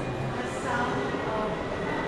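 Indistinct chatter of many people in a large indoor hall, a steady mix of voices with no words standing out, over a faint steady high tone.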